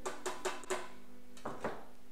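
Block of hard pecorino romano cheese being rubbed over a plastic colander, used as a grater: a quick run of scraping strokes, then two more near the end.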